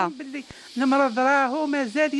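A woman speaking, over a steady high hiss.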